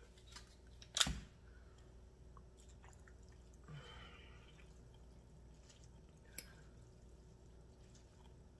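A single sharp knock about a second in, from a spice shaker being set down. Then faint handling sounds of a fork lifting noodles from a glass bowl, with a short soft rustle near the middle and a small click later.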